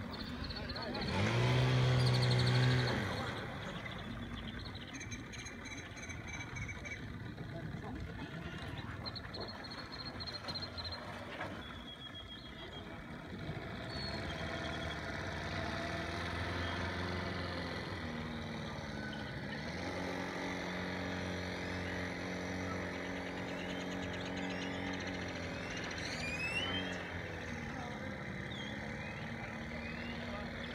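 Small boat's outboard motor running steadily, its pitch dipping and rising a few times, with a louder burst of the same low, pitched sound about two seconds in.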